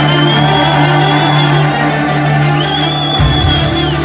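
Heavy metal band playing live in a hall, with the crowd cheering. Two long, high held notes stand out over a steady low drone, and the low end shifts near the end.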